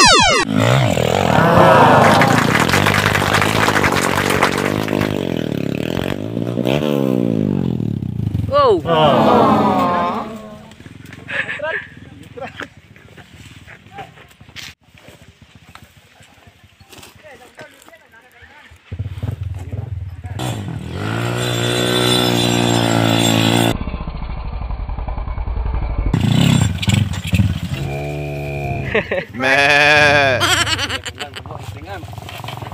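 Off-road motorcycle engines revving hard on a steep dirt hill climb, pitch rising and falling with the throttle. The engine noise drops away to a quieter stretch with scattered knocks through the middle, then revving returns in the second half.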